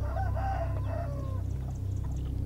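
A rooster crowing once, lasting about a second and a half and ending in a falling note, over a steady low rumble.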